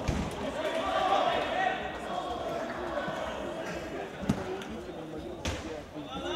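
Futsal ball being kicked and bouncing on a hard sports-hall floor: a few sharp thuds, near the start, a little past four seconds and near the end, over steady shouting and chatter from players and onlookers.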